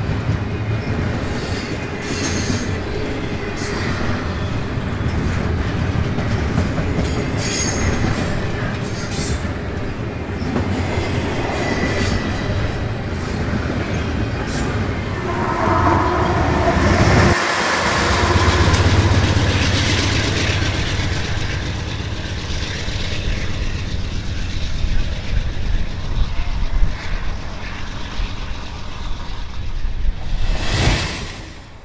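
Double-stack intermodal freight cars rolling past close by, wheels clattering over the rail with some squealing on the curving shoofly track. About halfway through, a diesel locomotive passes close, its engine rumbling under the wheel noise.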